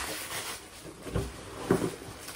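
Cardboard and paper packing rustling and shuffling as parts are handled in a shipping box. The rustle is sharp at the start, and there are a couple of short soft thuds partway through.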